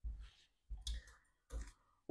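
A few faint, short clicks, spaced out with quiet gaps between them.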